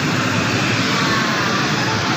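Loud, steady rushing din of an indoor playground, with faint children's voices mixed into it.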